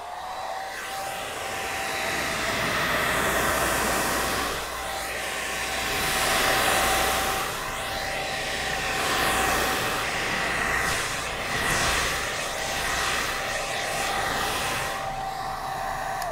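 Handheld hair dryer running on its cool setting: a rush of air with a steady motor whine, swelling and fading in loudness as it is moved about the beard. The whine winds down at the very end as it is switched off.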